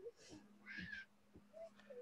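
Near silence in a pause of a video call: a faint steady low hum with a few faint brief sounds, the clearest about a second in.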